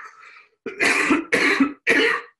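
A man coughing three times into his hand, three short harsh coughs about two-thirds of a second apart.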